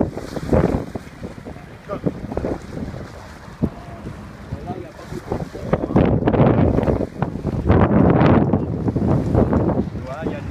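Wind buffeting the microphone aboard a sailboat under way, with choppy water around the boat; the gusts grow much stronger about halfway through.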